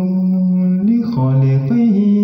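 A male voice chanting a line of an Arabic devotional poem unaccompanied, holding long drawn-out notes; about halfway through the pitch drops lower for a moment, then rises again.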